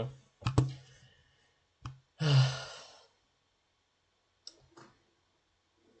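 A few sharp clicks, then a long breathy sigh from a man about two seconds in, followed by two faint clicks.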